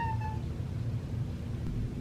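A cat's short meow right at the start, then a low steady hum.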